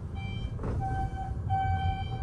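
Schindler elevator car descending, with a steady low rumble of travel. Over it a single-pitched electronic beep sounds, first faintly, then held about half a second, and again for just over a second after a short break.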